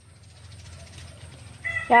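Quiet outdoor background with faint chicken calls and a low steady rumble; a woman's voice starts again near the end.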